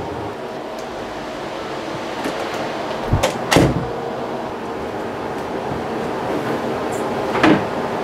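A bedroom door being opened: two sharp knocks from the knob and latch a little past three seconds in, the first with a deep thud, then a fainter click near the end, over a steady background hiss.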